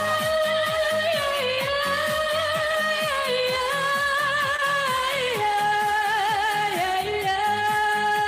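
A woman singing long held notes with vibrato over a pop backing track with a steady drum beat. Her held notes step lower about five seconds in and again near the end.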